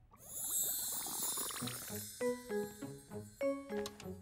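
A tinkling, shimmering chime sweep that fades over about two seconds, then light, bouncy cartoon background music of short, separate notes.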